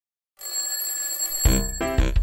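Silence, then a cartoon alarm clock bell ringing from about half a second in. About a second later, bouncy children's song music with a heavy bass beat comes in over it.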